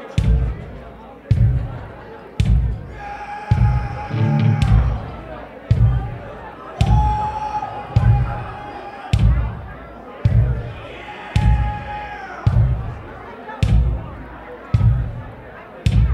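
Live band starting a song: a slow, steady beat of heavy drum hits, about one a second. Three times a long held note rings out over the beat.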